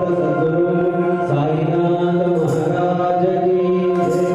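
Ayyappa devotional bhajan: a chanted vocal line over a steady, held musical accompaniment.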